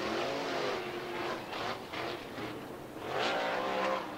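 Winged 410 sprint car V8 engines on the dirt track just after the checkered flag, the pitch dipping as the throttle comes off, then rising again about three seconds in.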